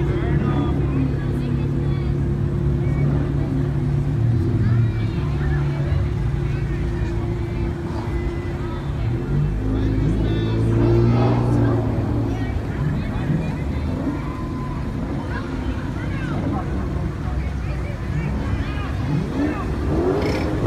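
Cars in a slow parade rolling past, their engines running at low speed, with a swell of engine sound about halfway through, over the chatter of onlookers.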